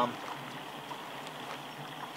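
Steady outdoor background hiss with faint rustling and a few small ticks as a fabric day pack is rummaged through.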